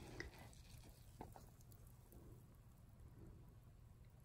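Near silence, broken by a few faint soft ticks and rustles as a gloved hand shifts damp coffee grounds and shredded cardboard bedding in a worm bin.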